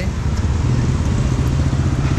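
Steady low rumble of street traffic, with motor scooter engines running.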